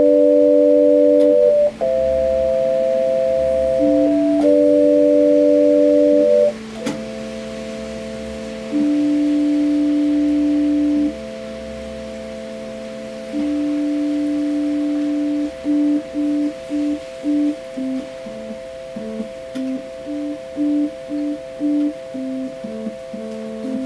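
Yamaha electronic keyboard playing slow, sustained chords in a flat organ-like tone. From about seven seconds two high notes hold as a drone while the lower notes change, and near the end short notes repeat about twice a second.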